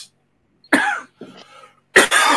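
A man coughing and clearing his throat: a sharp cough a little under a second in, a quieter rasp after it, then another loud cough starting at the very end.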